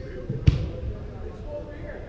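A soccer ball kicked once, a sharp thud about half a second in that echoes through the large indoor hall, over faint players' voices.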